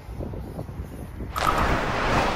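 Wind rumbling on the microphone as a car drives past, then a loud rushing whoosh of noise starting about one and a half seconds in.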